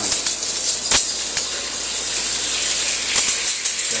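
A raw egg sizzling as it lands in a hot frying pan: a steady high hiss with sharp crackles and pops, the loudest pop about a second in.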